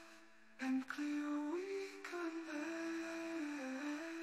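A voice softly humming a slow, stepwise melody over sustained background tones, part of the outro song; it comes in a little after half a second.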